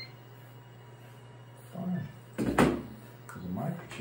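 Short murmured voice sounds around a single loud knock about two and a half seconds in: a handheld microchip scanner set down on the exam table.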